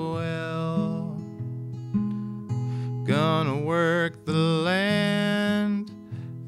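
A folk song: capoed acoustic guitar strummed in steady chords that change about every second, with a man singing long, sliding notes in the second half.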